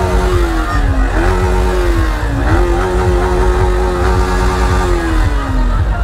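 A motorcycle engine revved three times. Each rev climbs quickly, is held, then falls away, the last held longest, for nearly three seconds.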